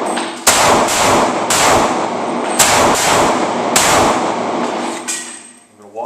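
Semi-automatic pistol shots fired one after another, roughly a second apart, each echoing in an indoor range. This is the string of a body armor drill, two shots to the chest and one to the head, repeated. The last shot comes about five seconds in, followed by a small clank.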